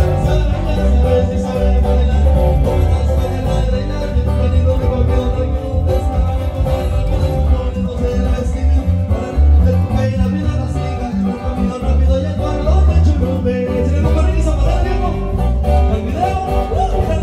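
A live sierreño-style band playing an instrumental passage of a corrido through a PA: guitars picking and strumming over deep, steadily moving bass notes.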